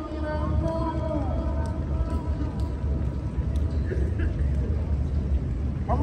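A sung line fades out about a second in. It leaves a steady low rumble and the faint voices of people around. Singing starts again right at the end.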